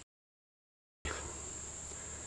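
Dead silence for about the first second, then a steady faint background with a constant high-pitched insect drone.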